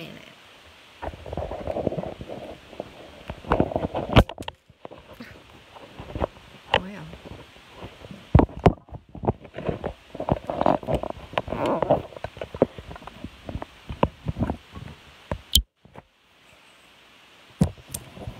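A smartphone being picked up and moved by hand while it records: rubbing and scraping on its microphone, broken by sharp knocks and clicks. The sound cuts out completely three times, each for under a second.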